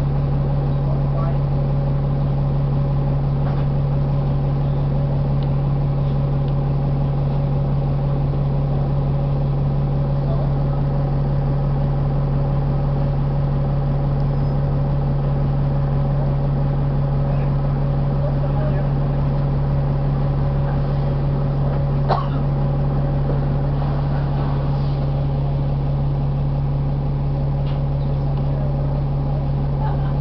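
Steady drone inside a 2012 Nova Bus LFS articulated city bus, its Cummins ISL9 diesel running at a near-constant low speed with a fixed hum, and a faint click about 22 seconds in.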